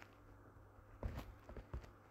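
A few faint taps and knocks about a second in: fingers tapping a phone's touchscreen to pick a chapter.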